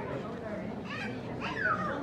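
A small child's high voice calls out twice about halfway through, the pitch sliding, over the low, indistinct murmur of adults talking.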